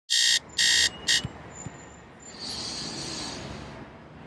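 Three short electronic buzzer beeps in quick succession, the third one shorter, followed by a quieter hiss.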